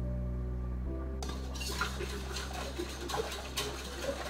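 A wire whisk stirring a wet batter in a ceramic bowl, clinking and scraping in quick irregular strokes from about a second in, over soft background music.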